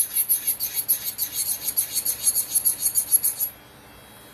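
Electric nail drill bit grinding an acrylic nail: a fast, scratchy rasp in rapid pulses as the bit works across the nail, cutting off suddenly near the end when the bit is lifted away.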